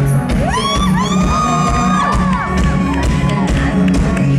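Live pop band playing a dance song with a steady bass beat, while fans in the crowd scream. The screams are high and overlapping, rising about half a second in, holding for roughly three seconds and then falling away.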